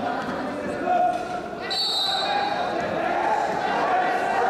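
Voices echoing through a large wrestling hall, with a short, high whistle blast a little under two seconds in.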